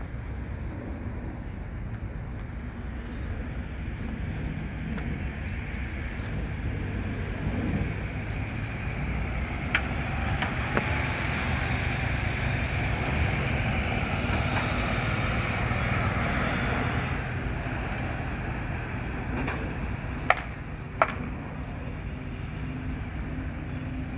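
Urban road traffic: a steady low rumble, with a vehicle's passing hiss that swells up and fades away in the middle. A few sharp clicks stand out, two near the middle and two a few seconds before the end.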